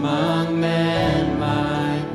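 Live worship song: a woman sings long held notes into a handheld microphone over instrumental accompaniment.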